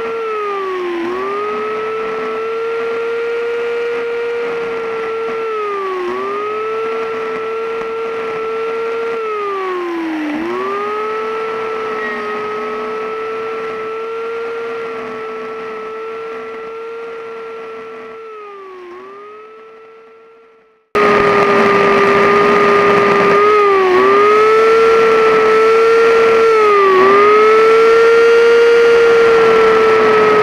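Chainsaw running at high revs, its pitch dipping briefly every few seconds as the chain bites into the wood while carving. The sound fades out about two-thirds of the way through, then cuts back in suddenly, louder.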